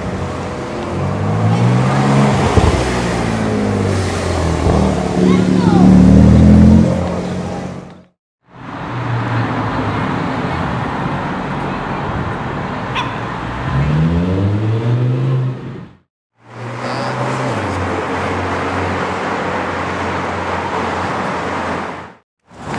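Sports car engines accelerating past in street traffic, in three short clips joined by abrupt cuts: a Porsche 911, then an Audi R8, then another car. Revs climb and drop in steps as the gears change, and it is loudest about six seconds in.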